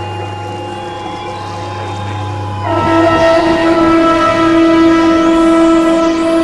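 Synthesizer drone of steady held tones over a low hum, joined about two and a half seconds in by a louder chord of several sustained tones, like a horn chord.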